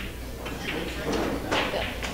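Indistinct voices of people talking in the room, with no clear words.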